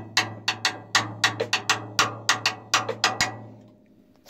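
Drum kit played with sticks: a run of sharp, even strokes about six a second in a 6/8 groove, the Bembe feel, over a low steady drum ring, stopping a little before the end.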